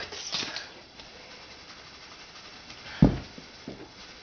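A single dull thump about three seconds in, followed by a fainter knock, over quiet room tone.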